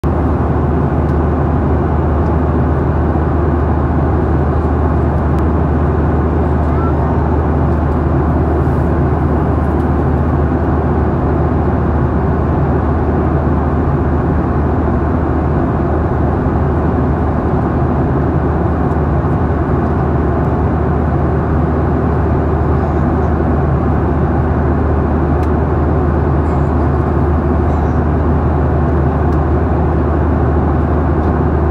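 Steady airliner cabin noise in flight: a low, even drone of the wing-mounted jet engines and rushing airflow, heard from a window seat beside the engine.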